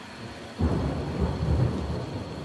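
A rumble of thunder breaks in suddenly about half a second in, loud and deep, over a steady rain-like hiss: a thunderstorm ambience at the tail of an ambient electronic track.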